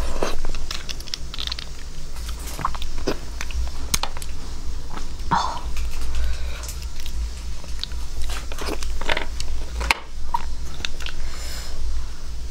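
Close-miked chewing and biting of braised beef marrow bones and their meat, with scattered sharp clicks and smacks over a steady low hum.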